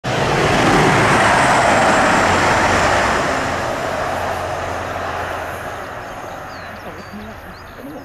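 TransPennine Express Class 185 diesel multiple unit passing at speed. It is loud at the start, with a steady low engine hum under the rush of wheels and air, and the sound fades away as the train recedes.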